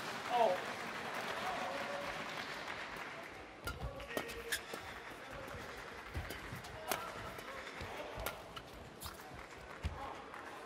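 Badminton rally: a shuttlecock struck back and forth with rackets, heard as a series of sharp hits about half a second to a second apart from about three and a half seconds in, after a stretch of hall crowd noise.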